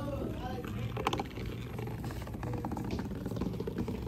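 Hexbug Nano vibrating robot bug buzzing as it skitters over a cardboard floor: a steady low hum with a fast rattle of its legs on the card. A sharp click about a second in.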